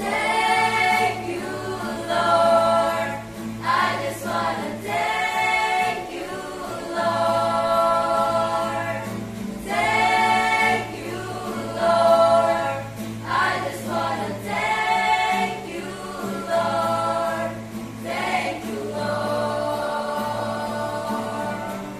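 A mixed choir of teenage voices singing a worship song, in long held phrases that swell and fall back every couple of seconds.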